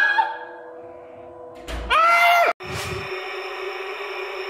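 A fading pitched cry, then a short scream-like cry over a low thud about two seconds in, followed by a steady, eerie droning chord of horror-style music.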